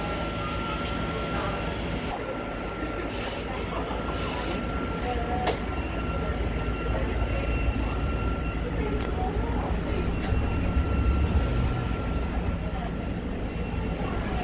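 Cabin noise inside a Linkker LM312 battery-electric bus on the move: a steady road and tyre rumble under a thin, constant high tone. The rumble swells about eight seconds in, and a couple of short hissing bursts come around three to four seconds in.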